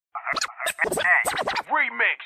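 Turntable scratching of a vocal sample: a rapid string of short back-and-forth strokes, the pitch sweeping up and down with each one.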